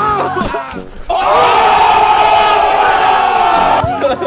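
A group of people yelling and cheering together, starting suddenly about a second in and cutting off sharply just before the end.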